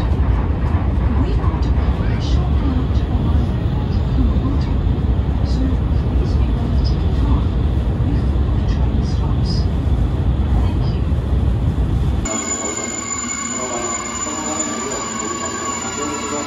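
Heavy low rumble of a train running, heard from inside the carriage, with faint voices under it. About twelve seconds in it cuts off abruptly to a quieter scene with a steady held tone.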